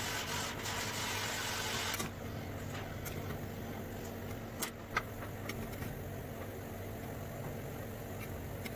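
A steady low mechanical hum, like an engine running, with a bright hiss that cuts off suddenly about two seconds in and a couple of light taps near the middle.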